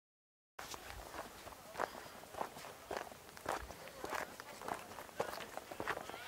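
Footsteps crunching on loose stones and gravel at a steady walking pace, a little under two steps a second, starting about half a second in.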